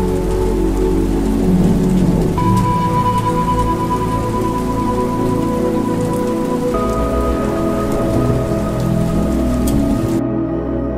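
Steady rain falling, with slow ambient music over it. The music's long held notes change about two and a half seconds in and again near seven seconds.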